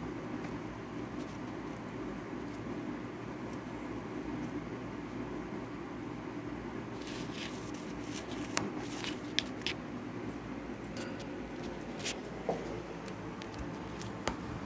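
Small clicks, scratches and rustles in a wire rat cage with paper bedding, scattered through the second half, over a steady low hum.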